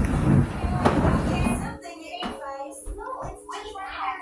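An indistinct person's voice, after a dense, noisy stretch lasting about the first two seconds.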